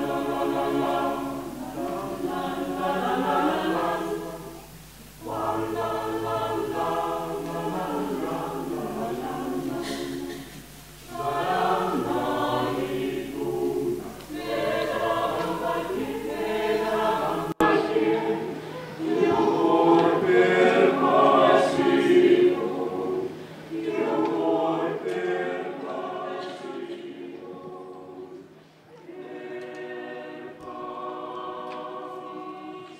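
A mixed choir of men's and women's voices singing unaccompanied, in phrases broken by short breaths between them.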